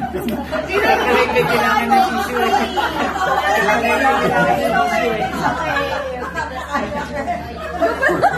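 Several people talking over one another in indistinct chatter, with no single clear voice.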